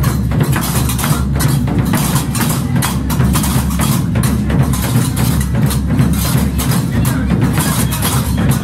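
Gnawa percussion: a large double-headed tbel drum beaten steadily under the fast, continuous metallic clacking of several pairs of qraqeb iron castanets.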